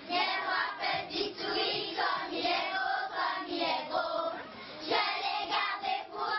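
A group of children singing together in chorus.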